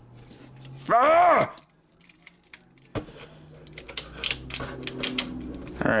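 A short groan about a second in, then a run of small, sharp clicks and snaps as the plastic and die-cast parts of a Transformers Masterpiece MPM-06 Ironhide figure are pushed and shifted into place. The parts will not seat.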